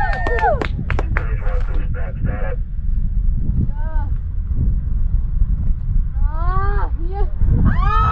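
Spectators whooping and calling out in long, rising and falling cries over a steady low rumble.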